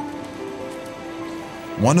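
Soft background music with held notes over a steady, rain-like hiss. A man's narrating voice comes in near the end.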